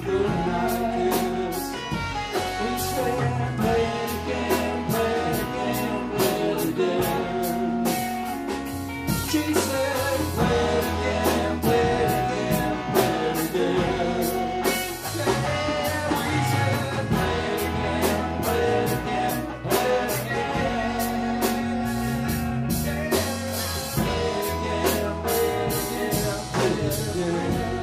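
Live country band playing: electric guitars over bass and a drum kit keeping a steady beat.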